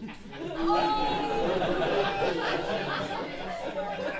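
Several people's voices talking over one another, with no single clear line of speech.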